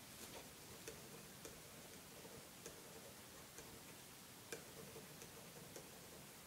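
Faint ticking of a clock, a sharp tick a little more often than once a second, over near-silent room hiss.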